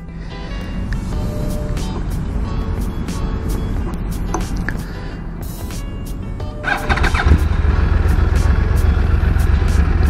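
A low steady rumble, then about seven seconds in a Yamaha R1's inline-four motorcycle engine is started: a brief rising starter whine as it cranks, then it catches and settles into a louder steady idle.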